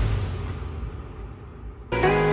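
Background music changing tracks: a falling whoosh sweeps down in pitch over a fading low rumble as an electronic dance track ends, cut off just before the end by the start of a guitar piece.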